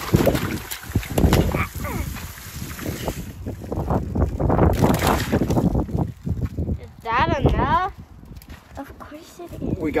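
Water from an outdoor faucet running through a multi-straw water-balloon filler, hissing and splashing for the first three seconds or so, mixed with bumps and rustling from handling. A child's voice calls out briefly about seven seconds in.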